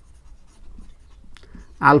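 Marker pen writing on a whiteboard: faint scratching strokes, with one light click about a second and a half in.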